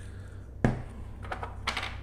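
Shaker bottle of dry spice rub handled on a table while rub is poured out onto a board. There is one sharp tap about half a second in and a few short rustling clicks near the end, over a steady low hum.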